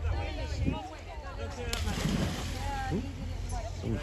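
A person jumping into the sea: a sudden splash a little before halfway through, followed by about a second of churning water, with voices around it.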